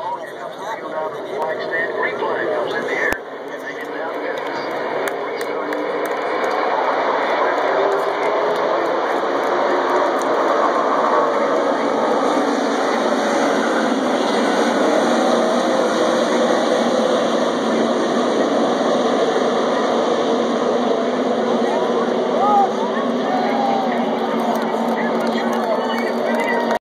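A pack of NASCAR Nationwide Series stock cars with V8 engines running at racing speed. The sound swells over the first few seconds as the field approaches and then holds loud and steady, with many engines overlapping at different pitches.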